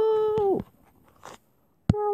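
A high-pitched vocal call held steady for about half a second before its pitch drops away, then a pause, a sharp click near the end, and the start of another call that rises and falls.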